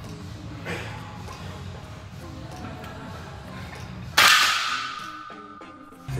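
A loaded barbell of about 370 lb racked into the steel hooks of a power rack after a bench-press set: one sharp metallic clang about four seconds in, with the bar and plates ringing on and fading afterwards. Background music plays throughout.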